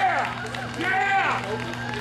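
A man's voice through the stage PA system, in two short phrases, over a steady low hum.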